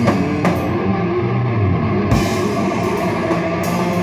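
Live doom metal band playing: a distorted electric guitar holds low, ringing chords over a drum kit. There are cymbal hits right at the start and half a second later, then only the guitar rings for a moment, and the drums and cymbals come back in about two seconds in.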